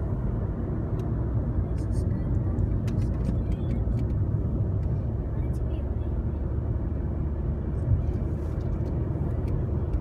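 Car cabin noise while driving on a smooth paved road: a steady low hum of engine and tyres heard from inside the car.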